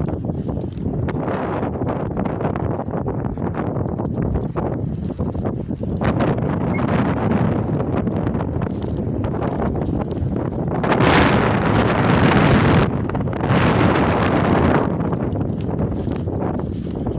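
Footsteps swishing and crunching through long dry grass, with wind buffeting the microphone. The rustling grows louder and sharper in two stretches in the second half.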